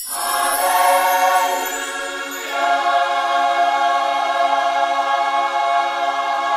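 Intro music: a choir holding a sustained chord that moves to a new chord about two and a half seconds in.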